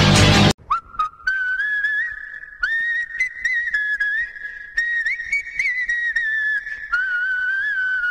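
Loud guitar-driven music cuts off abruptly about half a second in. A whistled tune follows: one melody line with small slides between notes and a few short breaks.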